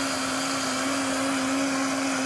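Countertop blender running steadily, grinding soaked, peeled almonds with water into almond milk: a constant motor hum over an even rushing noise.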